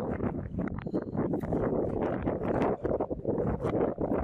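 Wind buffeting the microphone on open water: a continuous rough rush broken by many irregular knocks.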